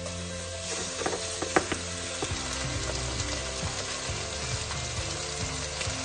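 Raw chicken pieces dropped into a hot, oiled enameled cast-iron skillet, sizzling as they start to fry, with a few sharp knocks as the pieces land in the pan about a second in.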